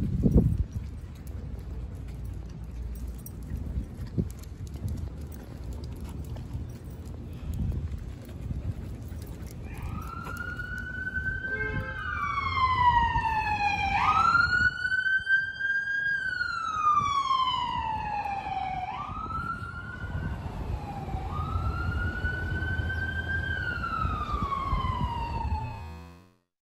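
Low rumble of street noise, then from about ten seconds in an emergency-vehicle siren wailing, its pitch rising and falling slowly in cycles of a few seconds.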